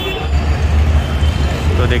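Busy roadside street ambience: a steady low rumble of road traffic under people talking, with a man's voice starting near the end.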